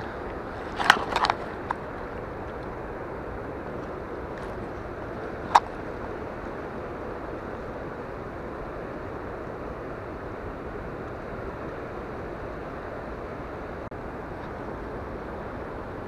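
Steady rush of fast-flowing river water, with a few sharp clicks: a quick cluster about a second in and a single one at about five and a half seconds.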